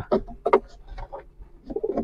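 Domestic pigeons cooing in a loft, with a few short knocks and rustles of handling about half a second in.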